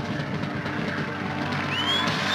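Jazz-rock band with Hammond organ, electric guitar, bass, saxophone and drum kit holding the closing chord of the piece, with cymbals ringing. A high whistling tone rises near the end.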